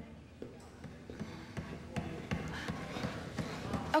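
Faint, irregular taps and knocks, scattered through a few seconds of quiet room sound.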